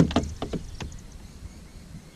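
A kayak paddle knocking against a kayak as it is moved into the water: one sharp knock at the start, then a few lighter clicks within the first second.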